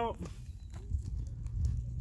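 Crumpled newspaper and dry brush being handled and stuffed into a fire pit: scattered light clicks and knocks over a low rumble, with a faint steady low hum coming in about halfway.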